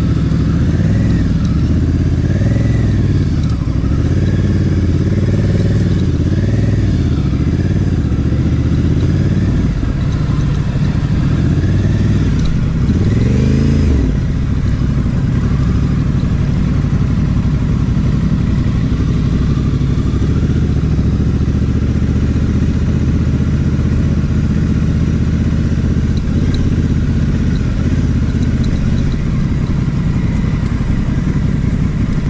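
Honda Africa Twin's parallel-twin engine under way, its pitch rising and falling with the throttle through the first half, with a quick rev about halfway through, then running at a steadier speed.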